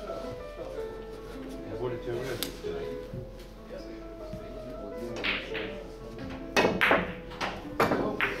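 A Russian billiards shot: near the end, a cue hits the heavy pyramid ball and the balls clack against each other and the cushions in a quick run of about four sharp knocks. This sits over steady background music and voices.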